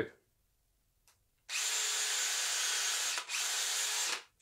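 DeWalt 18V XR brushless cordless drill running steadily as it drills through an existing screw hole in an RC truck bumper, opening it up for longer screws. It starts about a third of the way in and runs on to the end, with a brief dip just after the middle.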